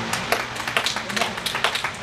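Scattered hand clapping from a few people in a church congregation: short, irregular claps several times a second.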